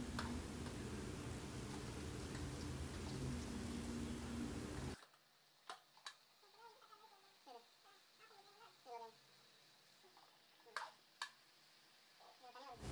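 Low, steady background hum that cuts off suddenly about five seconds in, leaving near silence broken by a few faint clicks.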